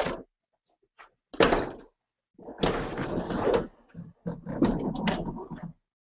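Handling noise on a workbench as a sliding compound miter saw and loose tools are moved about: a sharp knock about a second and a half in, then scraping and rattling. The saw's motor is not running.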